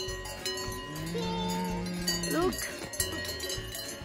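Cowbells on grazing cows ringing unevenly, many steady bell tones overlapping. Near the middle, a drawn-out low call of about a second and a half ends in a quick upward slide.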